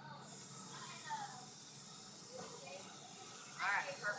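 A garden hose spray nozzle hissing steadily as it wets paper towels laid on garden soil; the spray comes on suddenly at the start.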